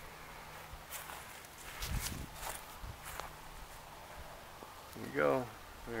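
Faint footsteps with scattered light knocks as a man walks around the parked truck, then his voice starting to speak about five seconds in.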